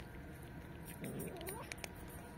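A cat gives a short meow that rises in pitch about a second in, followed by a few sharp clicks as dry cat food is crunched.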